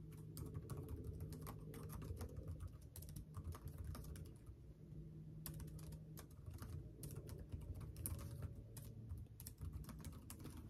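Faint typing on a computer keyboard: irregular key clicks that thin out for about a second midway.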